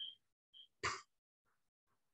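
A person clears their throat once, briefly, about a second in, followed by a few faint computer keyboard taps.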